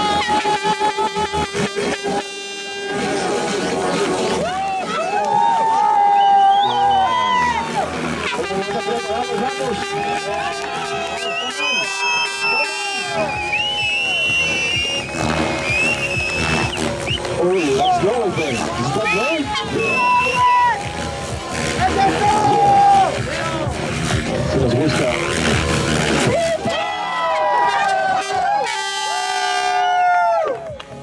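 Radio-controlled 3D helicopter flying hard aerobatics close to the ground: a steady whine from its rotor and drive that swings up and down in pitch with the manoeuvres, with stretches of rapid rotor-blade chop. Spectators shout and cheer over it.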